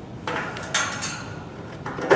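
Channel-lock pliers twisting a locked doorknob off its shaft: metal grinding and scraping, with a sharp clank as the knob breaks loose, and another scrape near the end.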